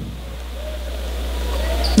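Gymnasium room tone during a free throw: a low steady hum that grows slightly louder, with faint distant voices.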